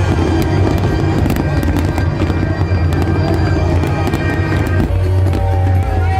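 Aerial firework shells bursting in a dense barrage, many bangs and crackles in quick succession, over music with a heavy bass.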